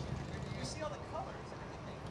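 Indistinct chatter of several people over a steady low rumble.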